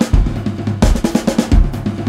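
Drum kit playing a break in a 1960s-style rock and roll song: rapid snare and bass drum hits with no singing, and a heavier accent about a second in.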